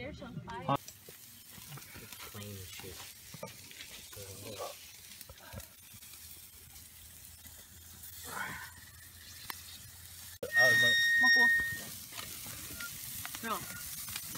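Meat sizzling over a wood campfire, on a grill grate and in a frying pan: a steady hiss. About ten seconds in, a loud steady high-pitched tone lasts just over a second.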